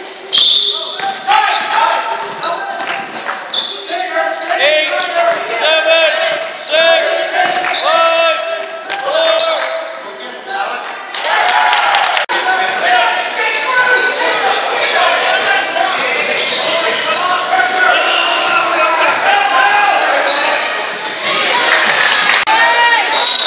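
Basketball game on a hardwood gym floor: the ball bouncing, sneakers squeaking in short high chirps, and players and spectators calling out, all echoing in the large hall.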